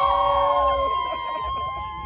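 A group of football players yelling together in a long held cheer: several voices overlap in the first second, then one drawn-out shout carries on through the rest.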